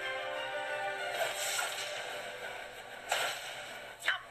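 Trailer music with a sound-effect swoosh about a second in, followed by a sharp hit or whip-crack effect, the loudest sound, about three seconds in.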